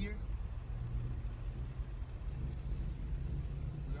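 Inside the cabin of a MK4 Volkswagen with the ALH 1.9 TDI four-cylinder turbodiesel: a steady low engine drone and road rumble as the car pulls in second gear at about 2,000 rpm. The 4-speed automatic is coded to its lower, economy shift points.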